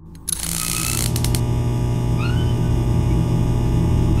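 An incandescent light bulb switching on as a sound effect: a short burst of hiss and a few quick clicks in the first second and a half, then a steady electrical buzz.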